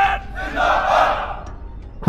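A drill command shouted by one voice at the start, then a massed shout from the ranked police formation about half a second in, lasting about a second.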